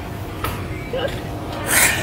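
A woman's stifled laughter behind her hand: muffled, breathy puffs, with a sharper breath of laughter near the end.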